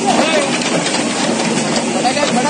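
People's voices calling out over a steady, loud hiss.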